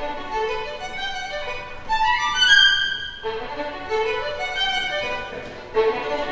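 Bowed violin playing a melodic line from sheet music, its notes changing about every half second.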